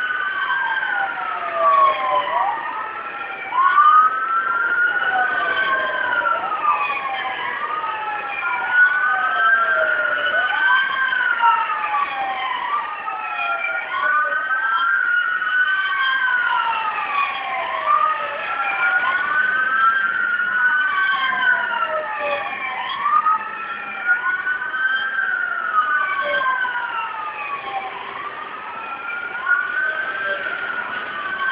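Several police sirens wailing at once and out of step, each rising and falling about every two seconds.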